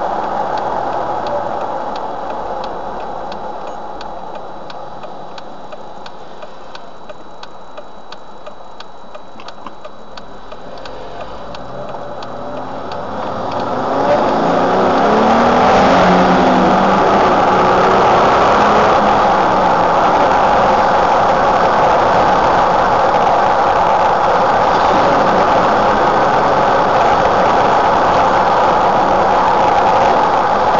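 Jeep Wrangler driving, heard inside the cabin. At first the engine and road noise are low, with faint regular ticking. About halfway through, the engine revs up as the Jeep accelerates, and a loud, steady noise of engine and tyres on the road follows.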